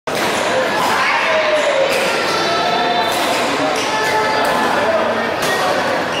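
Badminton rally: a shuttlecock is struck sharply by rackets about once a second, with players' footfalls, over the chatter of voices in the hall.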